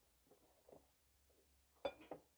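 Near silence with a few faint light taps, then a single sharp click near the end as a small plastic apple-shaped canister is lifted off its plastic stand.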